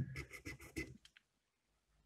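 Screwdriver tip scratching on an anodized extruded-aluminium heatsink: a sharp click, then a few short scrapes within the first second.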